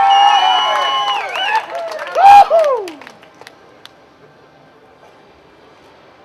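Voices whooping and cheering for an award winner: a long held whoop, then a loud rising-and-falling one about two seconds in. After that it drops to faint background noise.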